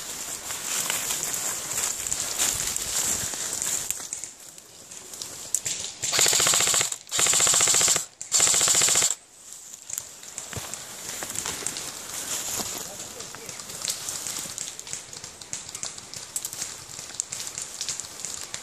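Airsoft rifle firing three full-auto bursts in quick succession about six seconds in, each burst about a second long and made of rapid shots.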